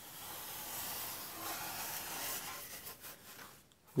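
Faint steady hiss with soft handling noise as hands turn a foam-board boat hull, dropping to silence shortly before the end.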